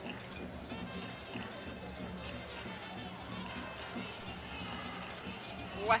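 Steady stadium crowd noise during a football match, with music faintly audible from the stands.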